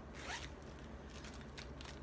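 Handling noise within reach of the microphone: a short rasp rising in pitch, then a few light clicks, over a steady low hum.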